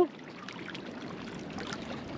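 A steady wash of water, small waves lapping at the shore.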